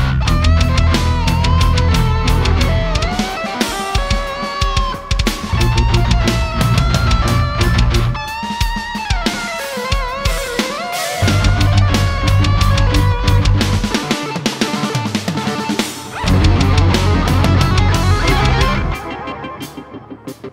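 Heavy progressive-rock music: a gliding lead line over drum kit and a heavy low bass part that drops out and comes back several times, thinning out near the end.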